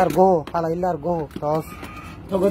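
A voice talking in short, repeated phrases, with a few light clicks from small items being handled in an open cosmetics case.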